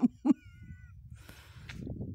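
A domestic cat meowing briefly near the start: a short call, then a thin, faint, high mew.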